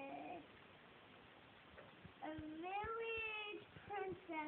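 A young girl's sing-song voice: a long held note trails off at the start, then after a pause of about two seconds comes another long drawn-out note that rises in pitch.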